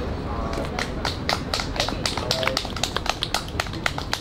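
Scattered applause from a small group, individual hand claps starting about half a second in and growing denser, with voices talking underneath.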